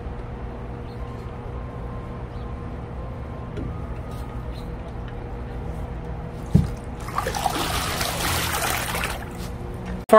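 Pool water splashing and trickling for about two and a half seconds, starting about seven seconds in, just after a single knock. A steady low hum runs underneath.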